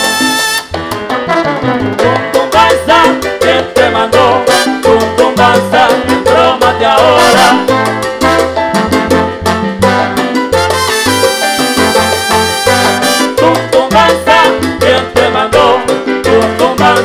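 Live salsa orchestra playing the song's instrumental introduction: trumpets and trombones over piano, upright bass and timbales and congas. The brass holds long chords that break off about half a second in and come back around eleven seconds in.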